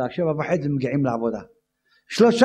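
A man's voice speaking through a microphone, stopping abruptly about one and a half seconds in and leaving dead silence.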